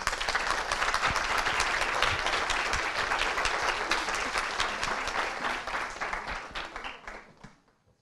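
Audience applauding after a talk, the clapping tapering off and dying away about seven seconds in.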